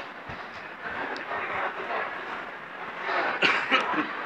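Busy exhibition-hall background noise: an even din of indistinct distant voices and activity, with a few sharp knocks or clatters about three and a half seconds in.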